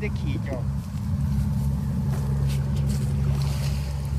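An engine running steadily with a low drone.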